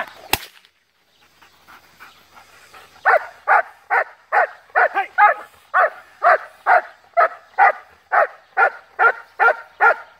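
German Shepherd barking steadily at a helper hidden in a training blind, about two barks a second from about three seconds in: the 'hold and bark', in which the dog guards the cornered helper by barking without biting. One sharp crack sounds just after the start.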